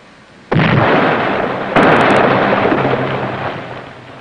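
Torpedo warhead exploding prematurely. A sudden blast comes about half a second in, and a second, louder blast just under two seconds in, followed by a long rumble that fades away.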